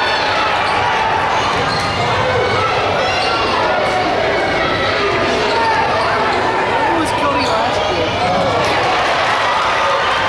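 Basketball dribbled on a hardwood gym floor during game play, under a steady din of many overlapping voices shouting and talking, echoing in the large gym.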